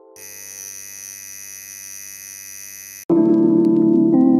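A rotary tattoo machine running with a steady electric hum for about three seconds, then cut off suddenly as loud music starts.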